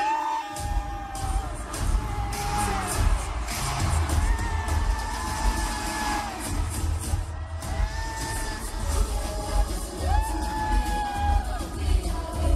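Live pop girl-group concert recording: female voices holding long sung notes over a steady, bass-heavy beat, with crowd cheering.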